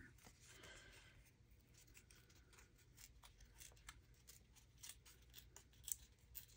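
Faint, scattered crackles and ticks of paper being torn and handled by hand, barely above near silence.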